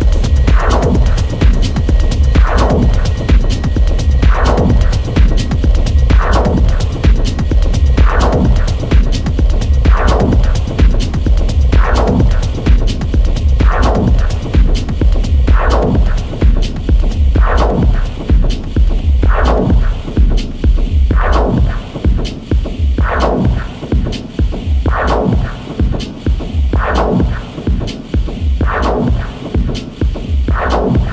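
Techno music from a DJ mix: a pounding bass pulse with fast ticking hi-hats. A falling synth sweep repeats about every two seconds.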